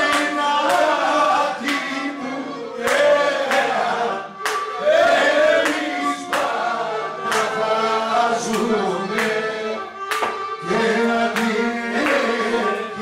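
A man singing a Pontic Greek song into a microphone, accompanied by a bowed Pontic lyra (kemençe), with sharp percussive strikes keeping time.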